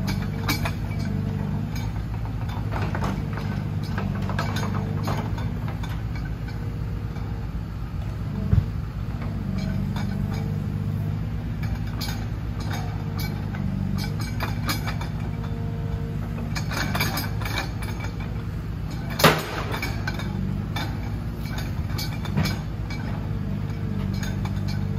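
Forestry forwarder's diesel engine running steadily while its hydraulic crane swings the grapple, a higher tone coming and going as the crane works. A few sharp knocks break in, the loudest about nineteen seconds in.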